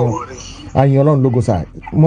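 A man's voice: a short run of speech-like sounds a little under a second in, ending with a brief rising glide, after a quieter pause.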